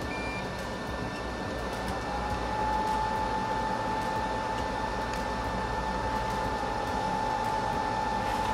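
Steady fan-like hum of bench equipment, with a thin steady whine that joins about two seconds in and gets a little louder.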